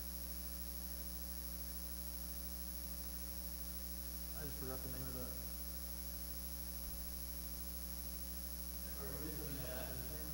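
Steady electrical mains hum, with faint speech briefly about four and a half seconds in and again near the end.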